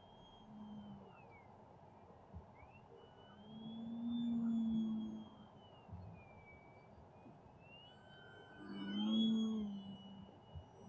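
Electric motor and propeller of an XFLY Glastar RC airplane flying overhead: a thin high whine that rises and falls with the throttle, and a lower propeller drone that swells twice, about four and nine seconds in, as the plane passes closer.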